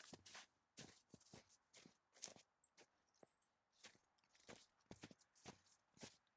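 Faint, irregular footsteps and rustling, about three soft steps or knocks a second.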